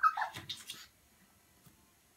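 A small puppy's short, high yip followed by scratchy scuffling, all over in under a second near the start, in a small tiled room.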